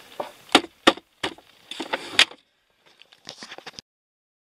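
Hard plastic dashboard trim being handled by hand: several sharp clicks and knocks over the first two seconds or so, a few lighter clicks near the end, then the sound cuts off.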